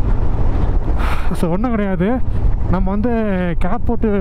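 Motorcycle being ridden, its engine a steady low rumble under wind rushing over the microphone; a man's voice talks over it from about one and a half seconds in.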